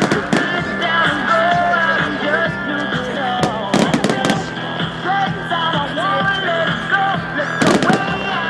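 Fireworks going off in quick volleys of sharp bangs, at the start, about four seconds in and again near the end, over loud pop music.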